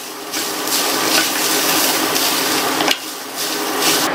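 Grated coconut and fried pirandai (adamant creeper) stems being stirred with a wooden spatula in a stainless-steel pan: a steady frying hiss with the scrape of the spatula, dipping briefly about three seconds in.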